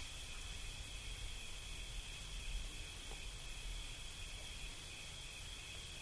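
Quiet background of a recorded talk: a steady low hiss with a faint, unbroken high-pitched tone running through it.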